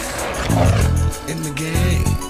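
Hip-hop music with deep, heavy bass notes, and a short, rough burst of noise about half a second in.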